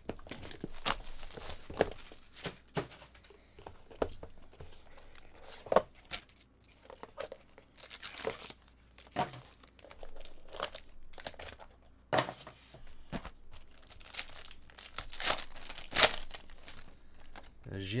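Plastic shrink-wrap and a foil trading-card pack being torn open and crinkled by hand, in a string of short, irregular rips and crackles with a few longer tears.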